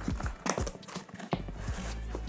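Cardboard box being opened by hand: the end flap of a long tripod carton is pried and folded back, giving a string of irregular light clicks and scrapes of cardboard.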